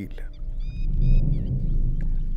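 A steady low rumble with a few short, high bird chirps about half a second to a second in.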